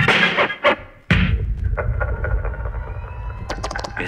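DJ battle routine played from turntables through the sound system: the music stops about half a second in, a single heavy thud hits about a second in, and a low rumble carries on after it.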